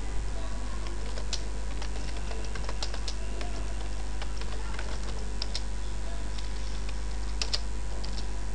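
Typing on a computer keyboard: a run of irregular keystroke clicks, over a steady low hum.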